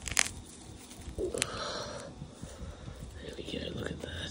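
Fingers picking and tearing leftover grass roots and dirt out of a crack in a concrete path: soft scratchy rustling, with a sharp snap just after the start and another about a second and a half in.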